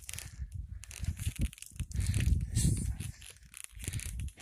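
Wind buffeting the microphone on an exposed summit: an irregular, gusty rumble with crackles.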